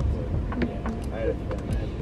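Faint, muffled voices over a steady low rumble, with a few small clicks.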